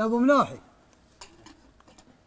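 A man's voice ends a word in the first half-second, then a few faint, sharp clicks follow at irregular intervals over a quiet background.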